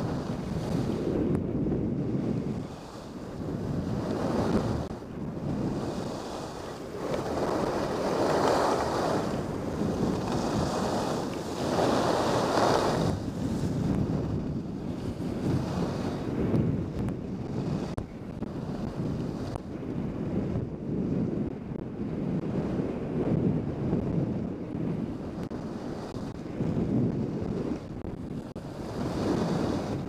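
Rushing wind buffeting the microphone of a skier's camera during a downhill run, mixed with the hiss of skis sliding on groomed snow. The noise swells and eases every couple of seconds, with the strongest surges about a third of the way in.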